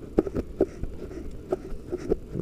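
Handling noise from a rifle scope with a clip-on camera being swung by hand: a few short, irregular clicks and knocks over a low steady rumble.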